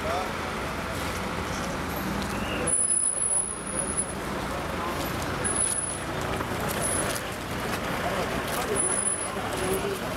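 Steady low running of idling emergency-vehicle engines, with several people talking over it.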